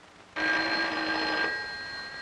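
Telephone bell ringing: one ring that starts suddenly about a third of a second in, lasts about a second, then fades away.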